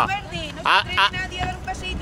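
Short fragments of voices over a low, steady motor-vehicle hum.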